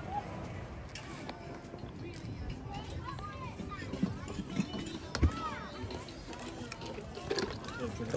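Indistinct voices of people talking in the background, with a single sharp knock about five seconds in.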